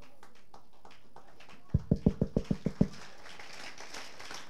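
A quick, even run of about nine low thumps, some eight a second, lasting about a second in the middle, over a quiet hall background.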